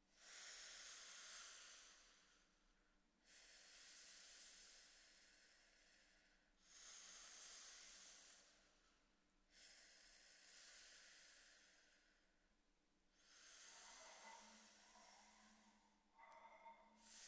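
Singers breathing audibly into close microphones as an extended vocal technique: five quiet, hissing exhales, each swelling quickly and fading over about three seconds. Faint low pitched tones come in near the end.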